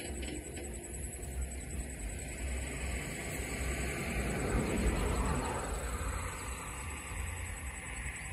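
Outdoor ambient noise with a low rumble on the microphone; a broad rushing noise swells to its loudest about five seconds in, then fades.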